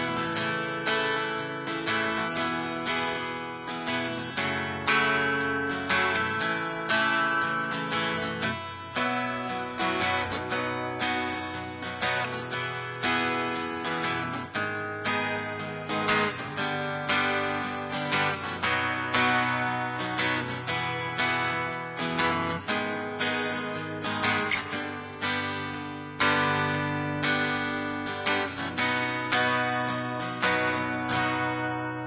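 Takamine acoustic guitar, capoed at the second fret, strummed in a steady rhythm, the chords changing every second or two.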